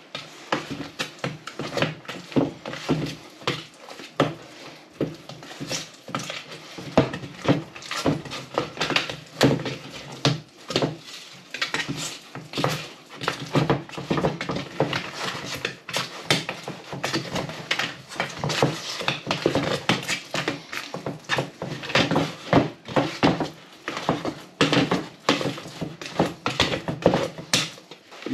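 Metal filling knife stirring powdered filler and water in a plastic bucket, scraping and knocking against the bucket's sides and base in a steady run of irregular clicks and scrapes.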